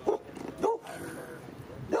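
A pit bull-type dog giving a few short barks.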